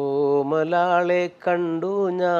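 A man singing a Malayalam song unaccompanied. Two long held phrases with a short break a little past halfway.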